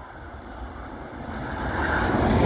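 An approaching SÜWEX electric multiple-unit train, its running noise growing steadily louder as it nears.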